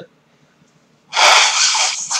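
A person's loud, breathy burst of breath, a forceful exhale or sneeze-like blast, starting about a second in and lasting just under a second.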